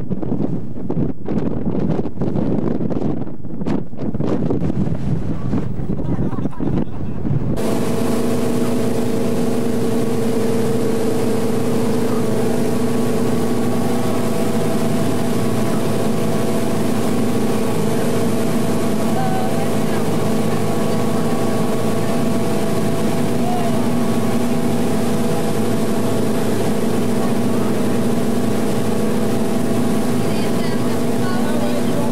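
Strong wind buffeting the microphone for the first seven seconds or so. Then a sudden cut to a motorboat under way, its engine running at a steady pitch over the rushing water of its wake.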